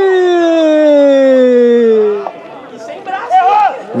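A male commentator's long, drawn-out shout, held on one vowel with its pitch sliding slowly downward until it breaks off about two seconds in, called as a touchdown is scored. A few short spoken words follow near the end.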